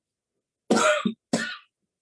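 A person coughs twice in quick succession, two short hard coughs a little over half a second apart.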